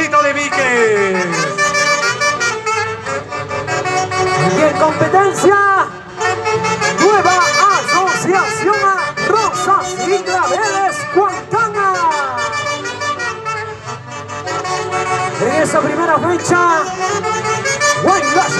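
Andean folkloric orchestra led by saxophones playing a lively huaylarsh tune, the melody full of sliding, bending notes.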